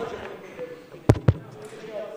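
Two sharp knocks about a fifth of a second apart, a little past the middle, heavy in the low end, over a faint murmur of voices.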